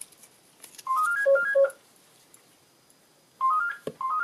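Phone ringtone: a short melody of stepped, rising beeping notes, heard twice, about a second in and again near the end.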